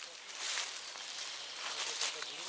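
Footsteps swishing through tall grass and leafy undergrowth, a steady soft rustling.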